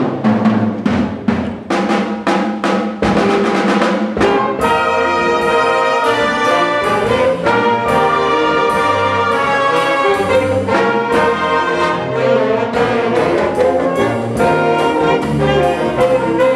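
Student jazz band playing a mambo: trumpets, trombones and saxophones over drum kit. Short punchy accents for the first four seconds or so, then the brass holds long loud chords.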